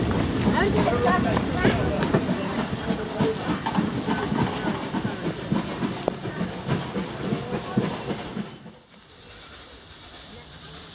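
Train of carriages rolling out of the station, its wheels clicking over the rail joints and slowly fading as it draws away, with people talking on the platform. The sound drops away suddenly near the end.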